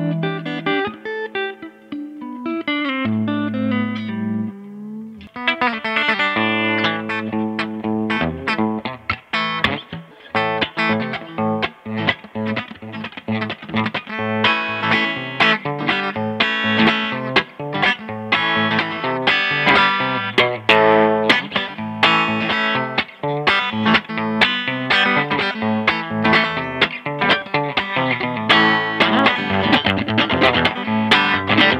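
G&L ASAT Classic electric guitar played on the clean channel of a Fender Blues Junior tube combo amp: a continuous run of picked notes, with a short break about five seconds in, then busier, faster picking.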